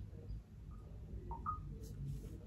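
Quiet room tone with a faint low hum, broken by a few short, faint high blips a little past the middle.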